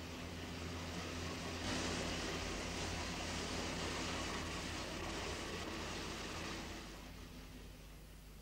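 Water splashing and streaming off a cuttlefish lifted from a hand net: a steady rush that grows louder about two seconds in and fades out near the end.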